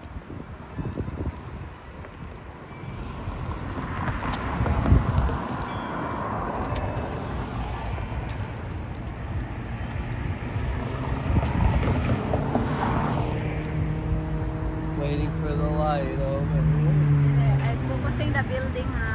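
Car traffic on a city street, with wind on the microphone. In the last few seconds a vehicle engine hums at a steady pitch.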